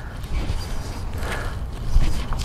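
Wind rumbling on the microphone through a golf practice swing, with a faint swish of the club in the middle and a short knock near the end as the clubhead brushes the turf.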